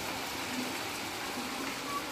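Steady rain falling on wet paving, an even hiss.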